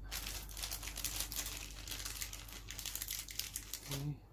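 Crinkly rustling of plastic packaging being handled: dense, irregular crackles, as when small kit parts are picked out of their plastic bags.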